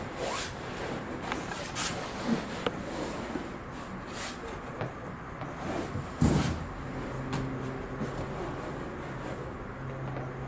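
A Sea Eagle SE-330 inflatable kayak's PVC hull rubbing and creaking as a man shifts his weight in it, with a thump about six seconds in as he stretches his legs out onto the tubes.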